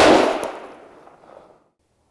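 A single hunting-rifle shot fired at a moose: one sharp report that fades away through the woods over about a second and a half.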